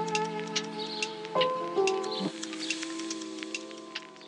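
Background music: held chords that change about a second and a half in, with light ticks over them, fading toward the end.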